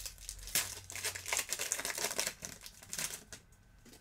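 Foil trading-card pack wrapper crinkling as it is handled and opened, a dense rapid crackle that stops about three and a half seconds in.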